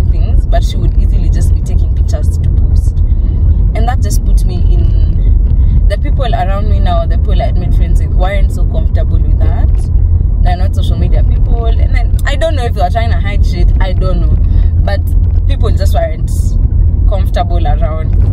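Steady low road and engine rumble inside a moving car's cabin, with a woman talking over it throughout.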